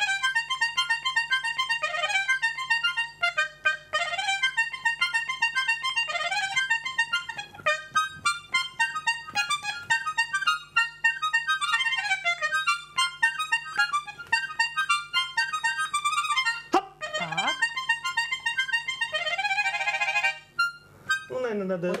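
A tiny Russian garmon (a miniature button accordion) played by hand in a fast, high-pitched tune with quick runs of notes. The playing breaks off briefly twice near the end.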